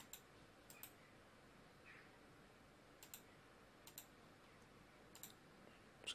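Computer mouse clicking: sharp clicks at about five moments, most of them quick doubles, over faint room tone.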